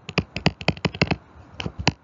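Stylus tapping and clicking on a tablet screen during handwriting: a quick, irregular run of sharp clicks, about seven a second, with a brief pause just past halfway.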